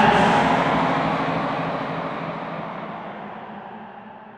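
Final distorted chord and cymbal crash of a stoner-rock song, hit at once as the singing stops, then ringing out as a noisy wash that fades steadily away.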